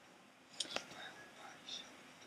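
Faint whispering, with a couple of small sharp clicks a little past half a second in.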